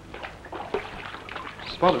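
Water trickling and splashing in a model test tank, with faint low voices. A man starts speaking near the end.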